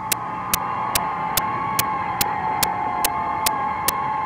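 Sirens sounding on two steady tones at once, their pitch sagging slightly, with a sharp click a little more than twice a second.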